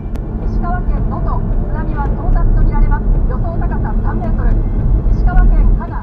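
Car cabin sound picked up by a dashcam while driving: a steady low rumble of engine and tyres on the road, with a voice speaking faintly over it.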